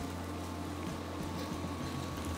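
Steady sizzle of potato wedges shallow-frying in hot oil in a wok, with a few faint pops and a low steady hum underneath.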